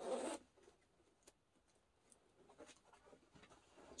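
Metal Talon zipper of a USMC M-51 field jacket being pulled open in one quick zip at the start, followed by faint rustling of the jacket fabric.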